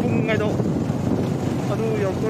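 Steady wind rush on the microphone of a moving motorcycle, mixed with its running noise, with brief snatches of a voice near the start and near the end.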